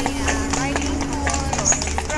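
Horse's hooves clip-clopping in a steady walking rhythm, about two or three strikes a second, as a horse-drawn carriage is pulled along, with people talking over it.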